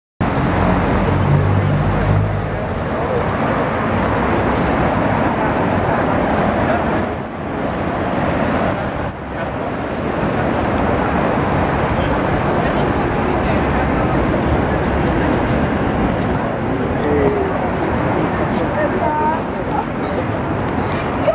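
Busy city street ambience: a steady wash of passers-by talking mixed with traffic noise, with a low engine-like hum in the first two seconds.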